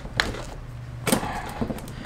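Steel differential pins and cast iron gear and carrier pieces of a Wheel Horse transaxle clicking and knocking together as they are fitted by hand. There are a few sharp clicks, the loudest about a second in.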